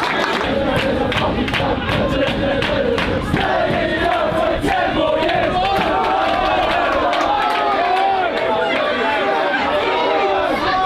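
Football crowd in the stands shouting and chanting, many voices at once without a break, with scattered sharp claps or knocks among them.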